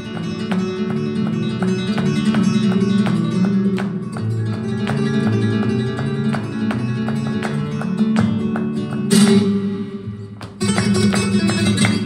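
Solo flamenco guitar playing a falseta: quick picked runs and notes with strummed chords, and a louder strummed passage about nine seconds in.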